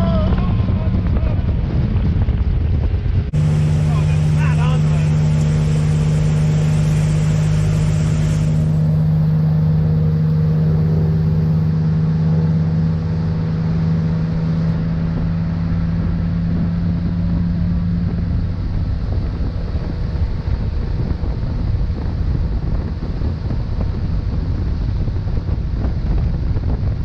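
Motorboat engine running steadily at towing speed, a low drone over the rush of wind on the microphone and churning wake water. A few seconds in the drone changes abruptly to a stronger, steadier note that fades in the second half.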